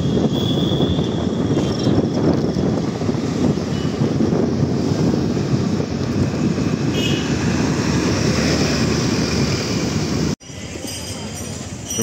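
Steady rushing wind and road noise on the microphone while riding along a road in traffic. It cuts off abruptly about ten seconds in, leaving a quieter background.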